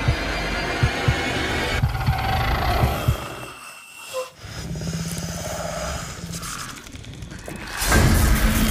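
Tense trailer score and sound design: a dense low drone with irregular deep thuds for the first two seconds, sinking almost to a hush around the middle, then a steady low hum that swells back up near the end.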